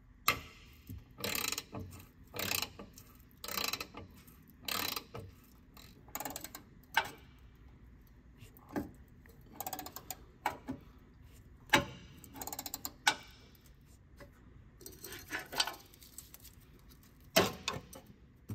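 Ratchet wrench clicking in short bursts as it backs out the rusty bolt holding the fuel filter bracket. It goes about one stroke a second at first, then more irregularly.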